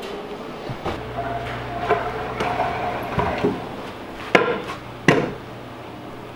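Stunt scooter knocking against a carpeted floor during tricks: three sharp knocks, about a second in and twice near the end, with smaller clatters between.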